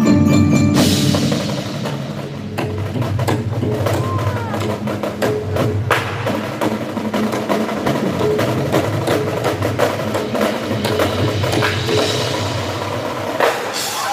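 Marching band playing, led by its percussion: a fast run of drum and wood-block strokes over sustained low notes, loud in an echoing arena.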